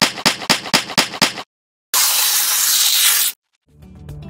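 Typewriter key clicks from a title sound effect, sharp and evenly spaced at about six a second; they stop about a second and a half in. After a short silence comes a loud burst of hiss lasting about a second and a half.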